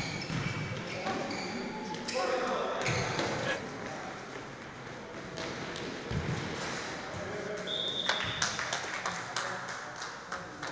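Futsal match sounds in a large sports hall: players' voices calling out and the thuds of the ball being kicked, with a run of sharp knocks near the end.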